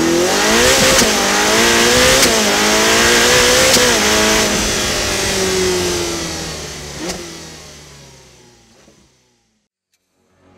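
Car engine accelerating hard, its pitch climbing and dipping several times as it runs up through the revs, then fading away over the last few seconds.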